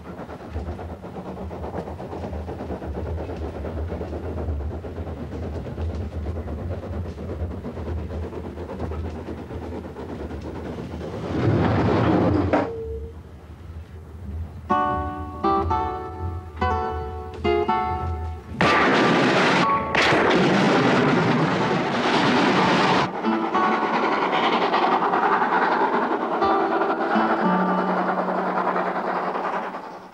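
Steady low rumble of a moving train for the first ten seconds or so, cut by a loud rushing burst. Then music with distinct separate notes comes in, another loud rushing passage lasts several seconds, and sustained music carries on to the end.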